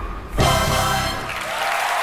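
A live stage musical's final chord, struck about half a second in and held, giving way to audience applause.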